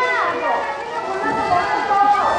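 People's voices, talking and laughing.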